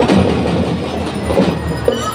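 Marching drum and lyre band playing, led by snare drums beating a fast, dense pattern of strokes.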